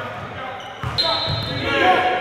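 Basketballs bouncing on a hardwood gym floor, a few low thuds that echo in the large hall, with players' voices in the background.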